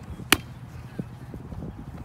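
A soccer ball struck once with a single sharp smack, followed by a fainter knock about a second later.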